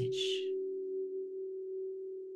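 A low, sustained meditation drone of two steady pitches, held under the guided meditation and fading slowly. A short breathy hiss sounds at the very start.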